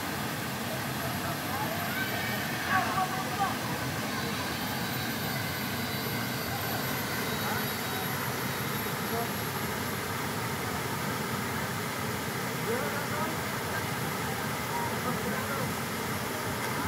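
Steady rush of a small waterfall pouring into a shallow rock pool, with the voices of people bathing in it; a few short, louder calls come about three seconds in.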